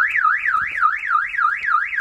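Car alarm siren warbling rapidly up and down, about four sweeps a second.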